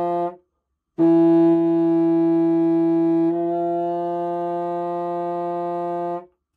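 Contrabassoon sounding an F in its tenor register with the open fingering plus the top thumb key. The end of a short note, then after a pause a long held note that grows a little softer and thinner about two seconds in; the note is pitched rather low (flat) with this reed setup.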